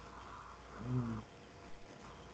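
A person's short voiced sound, a brief hum or drawn-out syllable lasting about half a second, about a second in, heard over a video-call line with faint background hiss.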